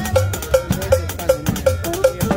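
Live cumbia combo music: a cowbell-like metal stroke on every beat, about two and a half a second, over drum-kit kicks and double bass notes.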